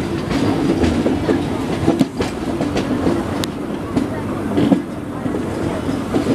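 Express train coaches running at speed, heard from an open window alongside the coach: a steady rumble of steel wheels on rails, with a few sharp clacks as the wheels cross rail joints.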